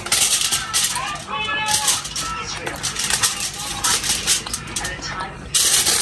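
Aluminium foil crinkling and crackling as it is folded and pressed by hand around a wrap, getting louder near the end.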